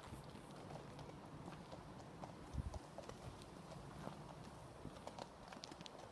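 Horse hooves clip-clopping on a gravel track, faint and irregular, with a louder low thump a little under halfway through.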